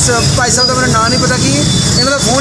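A man speaking, with steady street traffic noise underneath.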